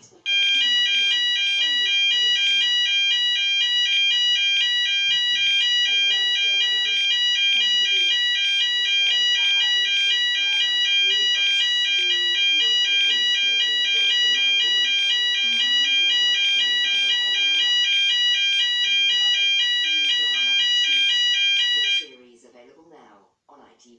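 Electronic alarm sounding: a loud, high-pitched beep pulsing rapidly and evenly. It starts suddenly just after the beginning and runs steadily for about 20 seconds over faint television speech.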